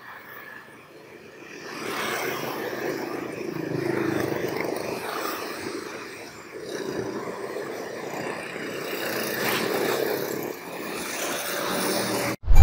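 Motorbike and scooter traffic on a busy street: small engines passing close by one after another, the noise swelling and fading as each goes past.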